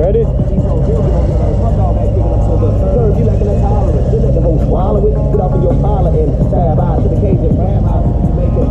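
Harley-Davidson motorcycle engines idling with a steady low drone, with voices and music over them.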